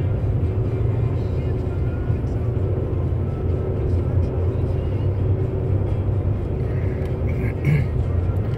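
Steady low rumble of a vehicle's engine and tyres on the road, heard from inside the cabin while driving.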